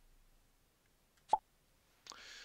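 Quiet room tone broken by a single brief pop a little past halfway through.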